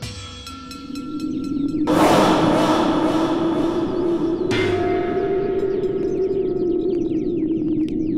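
Horror background score: a low sustained drone that swells up over the first two seconds, with a loud hissing wash coming in on top of it and then holding steady.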